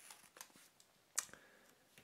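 Faint, small clicks and scrapes of a blade slitting a sticker seal on thick paper wrapping, with the sharpest click just past a second in.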